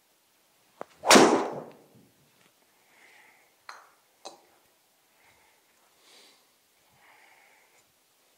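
A driver striking a golf ball off a tee: one loud, sharp crack about a second in that rings briefly in the small room. Two quieter clicks follow a few seconds later.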